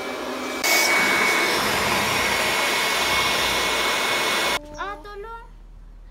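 Small electric air pump running with a steady whir at the rim of an inflatable pool. It gets louder about half a second in and cuts off suddenly near the end, followed by a brief high-pitched voice.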